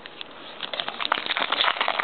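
A stack of Topps trading cards handled by hand: a quick run of small clicks and rustles that starts about half a second in and gets louder.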